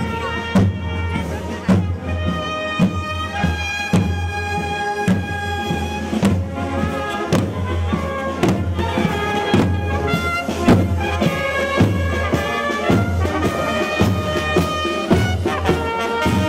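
Marching brass band playing a march, with trombone and tuba over a steady bass drum beat.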